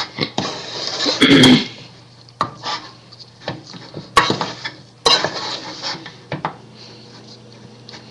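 Wooden spoon stirring and scraping thick, sticky homemade play dough in a saucepan, with irregular knocks of the spoon against the sides of the pot.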